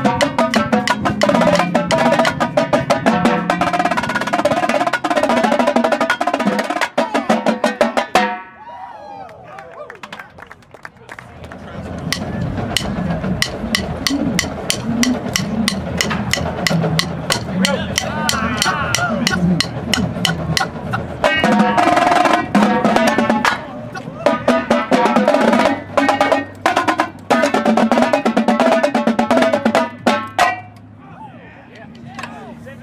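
A line of marching tenor drums (quads) playing fast unison passages, the rapid sticking moving around the differently tuned drums. About eight seconds in, the playing drops away to near-quiet for about three seconds, then builds back to loud runs that stop at the very end.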